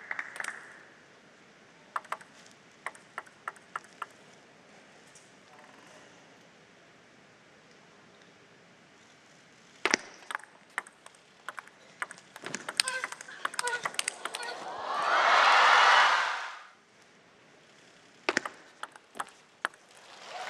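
Table tennis ball clicking off rackets and table through a quick rally, followed by a swell of applause lasting about two seconds. A few sharp clicks of the ball bouncing come earlier and again near the end.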